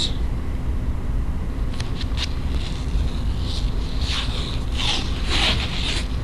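Athletic tape being pulled off the roll and wrapped around an ankle, with short raspy peeling sounds from about halfway in, over a steady low hum.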